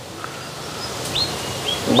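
A few short, high bird chirps over steady outdoor background noise, in the second half.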